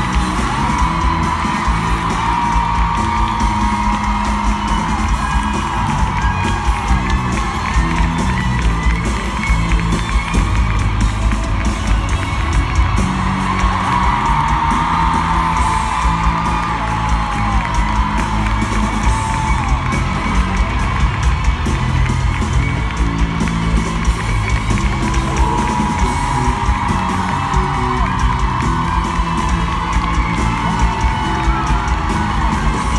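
Live band music played loudly through an arena's sound system, with a steady beat and long sustained melodic lines. The crowd whoops and yells over it.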